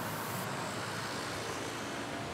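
Steady outdoor background hum of distant vehicles, an even wash of noise with no distinct events.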